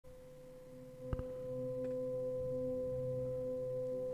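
A steady, sustained drone tone with a few soft overtones, like a meditation singing-bowl drone. It grows louder about a second in, where a faint click is heard.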